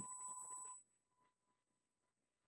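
Near silence: a faint steady electronic whine and hiss that cuts off under a second in, leaving dead silence.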